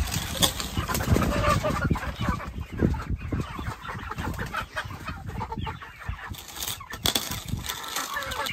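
A small flock of young chickens clucking, with many short calls overlapping.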